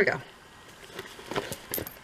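A handbag being handled and turned over in the hands: a few quiet rustles and clicks, with a light metallic jingle of its strap hardware near the end.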